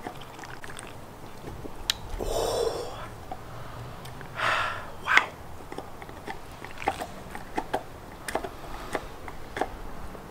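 A man drinking from a metal drink can: swallowing, with two breathy rushes through the nose about two and four and a half seconds in, then small clicks of swallowing and lip noise.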